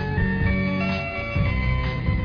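Instrumental break of a pop song played from a vinyl LP: held melody notes over a steady bass line, with no singing.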